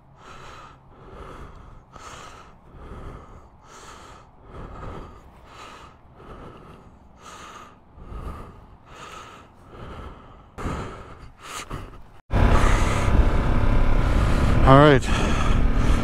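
A rider's breathing inside a helmet, soft regular breaths about one a second. About twelve seconds in it cuts suddenly to the much louder motorcycle engine and wind noise of the bike riding along.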